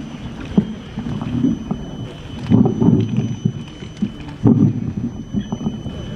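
Microphone being handled and repositioned on its stand, heard through the PA: irregular knocks and rubbing rumbles. The heaviest come about two and a half seconds in and again about four and a half seconds in.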